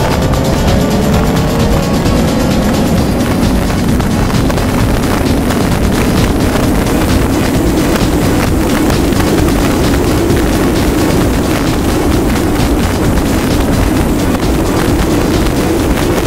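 Peugeot 206 CC engine accelerating on track, its pitch rising over the first few seconds and then holding steady, under a loud rush of wind on a microphone mounted outside the car body.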